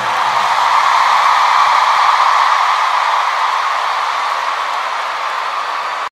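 Large concert audience cheering and applauding just after the final note of the aria: a steady wash of crowd voices and clapping that eases slightly over the last few seconds.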